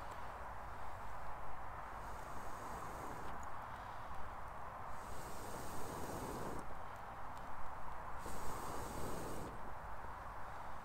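Breath blown through a metal blow tube into a small titanium wood stove to get freshly added wood burning: three long puffs of rushing air, about two, five and eight seconds in, over a steady hiss.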